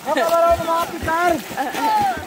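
People's voices shouting and calling out, one long held shout followed by shorter calls.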